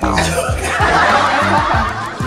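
Several people laughing together in a burst, over background music.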